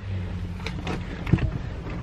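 Van engine idling, a steady low hum heard from inside the cabin, with a couple of faint clicks.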